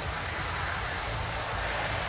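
Hockey arena crowd cheering in a steady roar after a home goal.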